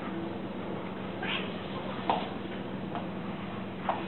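Domestic cat giving three short meows, about a second in, two seconds in and near the end, the middle one loudest, while a boxer puppy mouths it in play.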